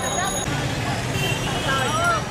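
Voices of people talking in a street queue over traffic noise, with a vehicle engine running steadily beneath.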